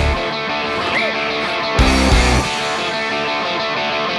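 Rock song on electric guitar in a stripped-back passage where the bass and drums drop out, with one short low hit about two seconds in.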